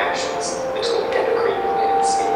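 A voice narrating through a hall's loudspeakers, echoing and indistinct.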